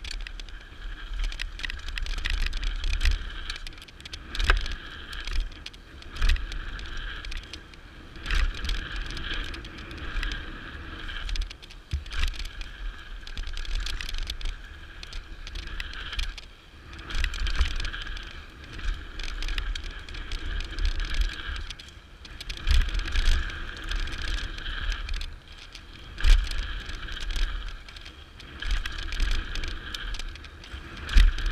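Mountain bike riding fast down a dirt jump line, heard from a camera mounted on its handlebars: tyres on packed dirt, the bike rattling, and a high buzz that comes and goes in stretches. Wind on the microphone gives repeated low rumbling surges, with scattered sharp knocks from the bumps.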